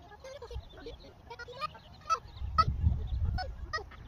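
Gulls calling in short, repeated squawks, overlapping one another. A low rumble comes in about halfway and becomes the loudest sound.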